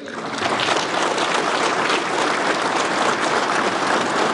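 Large audience applauding: dense, steady clapping that builds over the first half-second and then holds.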